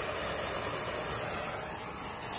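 Oxy-acetylene torch flame burning with a steady hiss.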